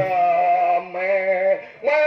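A male voice singing in a nasal, held-note style, the way a shadow-puppet master sings his verses: two long wavering notes, then a third starting near the end, each falling off at its close. The drum accompaniment stops just as the singing begins.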